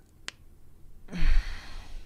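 A man's sharp click, then a breathy exhale like a sigh lasting most of a second, starting about halfway in.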